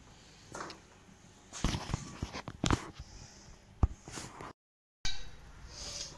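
A few scattered knocks and clicks of hands and tools working on the sheet-metal and plastic panels of a washing machine being taken apart, with a short hiss in between. Near the end the sound cuts out completely for half a second.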